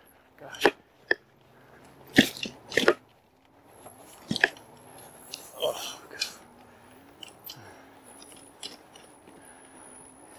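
Electric fat-tire bike jolting over small ditches in grass, making a series of sharp knocks and rattles. The two loudest come about two and three seconds in, with fewer and lighter knocks after that.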